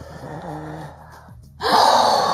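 A faint voice over low noise, then after a brief break about one and a half seconds in, a woman's loud breathy laughter with gasps for air.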